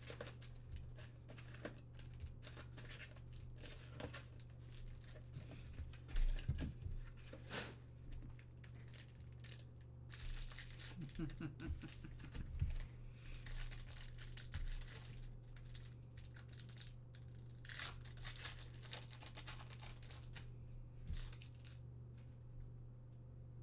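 Foil trading-card pack wrappers crinkling and tearing in crackly bursts as the packs are handled and one is ripped open. A steady low hum runs underneath.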